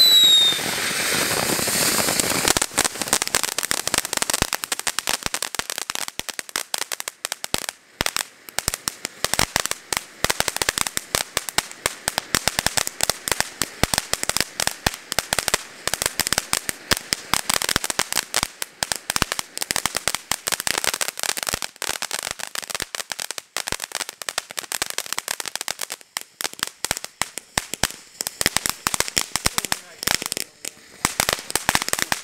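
Two ground fountain fireworks spraying sparks, crackling continuously with rapid pops. A short falling whistle and a loud hiss come in the first two seconds.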